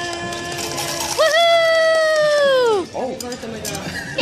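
A voice singing long held notes, each sliding down in pitch as it ends. A new note starts about a second in and falls away just before three seconds.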